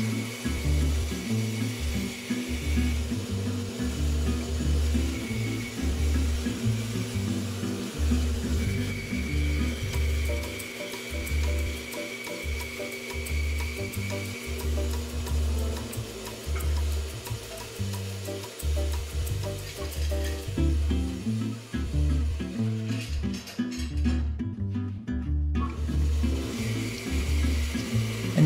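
Background music with a steady, repeating bass beat. Under it, a faint hiss from a bandsaw blade cutting through a hardwood board, which drops out briefly near the end.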